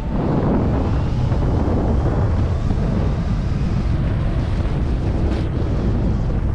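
Loud, steady wind noise buffeting a GoPro's microphone during a fast ski descent, mixed with the rush of skis running over snow; it starts suddenly at the cut.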